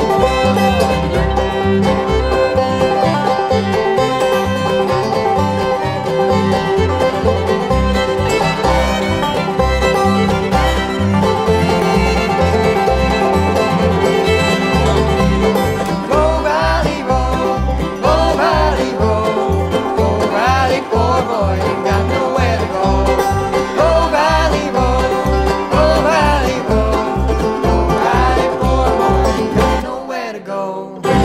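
Bluegrass string band playing an instrumental break: fiddle and banjo out front over guitar, mandolin and upright bass, with an even bass beat underneath. Partway through, a bending, sliding melody line comes to the fore.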